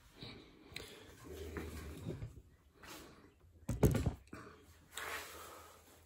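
Irregular rustling and handling noise with a sharp knock a little before four seconds in.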